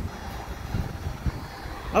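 Wind buffeting a phone's microphone over a low rumble, with two dull thumps in the second half.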